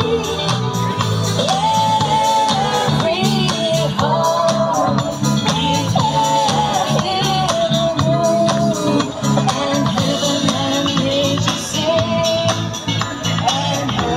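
Live band performing a song: a sung melody line over a drum kit's steady beat and band accompaniment.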